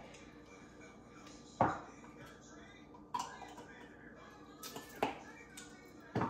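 Glass jars and their lids being handled and set down on a kitchen counter: three sharp clinks with a brief ring, the first, about one and a half seconds in, the loudest, and a light tap just before the last.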